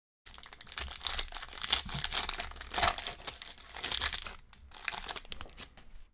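Foil wrapper of a 2020 Panini Select football card pack being torn open and crinkled by hand: a dense run of crackling that starts a moment in and stops just before the end.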